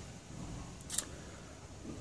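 Faint room tone with a single short click about a second in.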